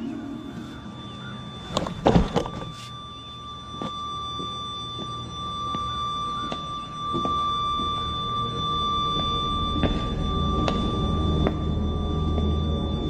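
Tense film soundtrack: a steady high drone tone held throughout, with a cluster of sharp knocks about two seconds in and a low rumble swelling in the second half.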